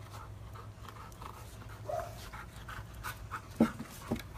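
A dog panting quickly in short, even breaths, about three to four a second, with a sharp knock near the end that is the loudest sound.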